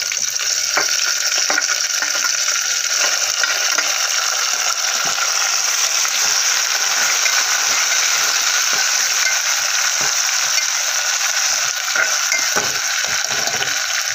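Chopped tomatoes and browned onions sizzling in hot oil in a pan as they fry, a steady hiss. Through it come scattered clicks and scrapes of a spoon stirring against the pan.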